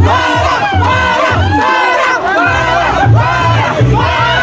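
A crowd shouting and cheering together over loud music with a repeated bass beat.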